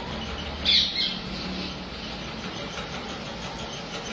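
A bird giving a short, loud two-part call about a second in, over steady background noise.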